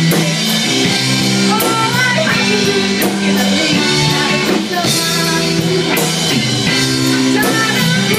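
A live rock band playing loud: electric bass and electric guitar over a drum kit with repeated cymbal strikes, and a woman singing.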